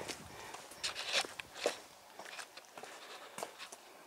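Footsteps on brick paving, a series of irregular steps with the loudest couple about a second and a half in.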